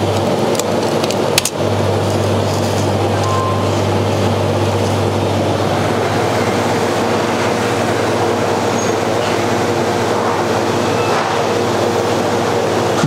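Three-tap soft-serve ice cream machine running its freezing cycle, its compressor and beater motor humming steadily. A few sharp clicks come in the first couple of seconds as a plastic cone holder is handled on the machine.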